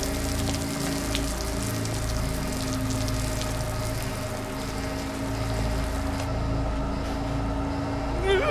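Steady heavy rain, with a low, sustained drone of film score held underneath.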